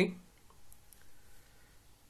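A pause of faint room tone with a few soft, short clicks in the first second, just after a spoken word ends.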